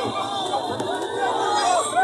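A crowd of many voices chattering and calling out at once, with no single speaker standing out.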